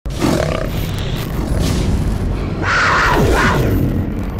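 Cinematic logo-intro sound effect: a dense, rumbling rush of noise that swells louder about three quarters of the way through, with a few falling swooshes.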